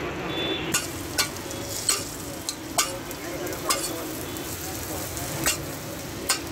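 Tikkis (chana dal and mutton mince patties) sizzling on a large round tawa griddle, with the sharp clink of a metal spatula striking the griddle about seven times at irregular intervals.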